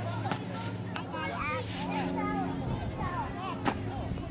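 Unintelligible chatter of several voices over a steady low engine hum, with a few sharp clicks; the loudest click comes near the end.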